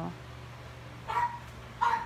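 A small dog barking twice, two short barks about a second apart, over a faint steady hum.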